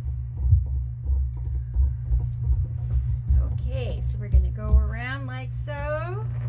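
Irregular low thumps and rubbing from hands rolling and shaping a strip of modeling clay on a paper-covered table, over a steady low hum. A voice comes in during the last two seconds.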